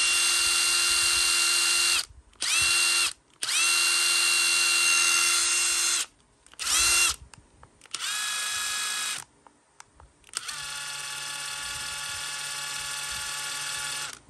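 Hilti SID 18-A cordless brushless impact driver spinning free with no load in a series of trigger pulls, each run rising quickly in pitch as the motor spins up. Four short higher-speed runs come first, then two quieter runs at a lower speed setting, the last about three and a half seconds long.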